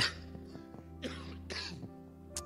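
Soft background music of held, steady notes, with a man's breaths or a throat sound into a close handheld microphone, heard as three short breathy puffs.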